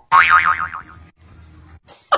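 Cartoon 'boing' sound effect: a springy pitched tone that wobbles up and down and fades within about a second, followed by a short click near the end.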